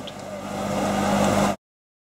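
Machinery at a concrete pour running with a steady low hum and rumble that grows louder, then cuts off abruptly about three-quarters of the way in, leaving silence.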